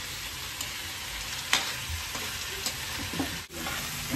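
Macaroni, sausage and corned beef sizzling in a stainless steel wok as they are stirred with a metal spoon, dry-sautéed before any water goes in. Two sharp clicks of the spoon against the pan, about one and a half and two and a half seconds in.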